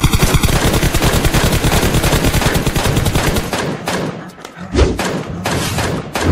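Rapid automatic gunfire from a mobile shooting game, a fast stream of about ten shots a second. It thins out about four and a half seconds in, with a couple of heavier thuds near the end.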